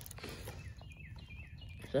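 A bird chirping faintly, a run of short high notes.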